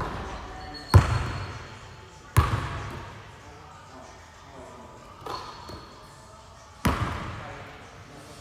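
Basketball bouncing on a hard floor, five bounces with uneven gaps, three of them loud, each echoing in a large room.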